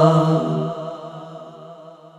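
Singing voices holding the last long note of a Bangla Islamic song, which fades out steadily over about two seconds.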